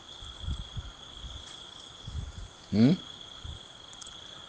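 A steady high-pitched trill, of the kind an insect such as a cricket makes, keeps going through a pause in a man's speech. Just before three seconds in there is one short vocal sound that rises in pitch.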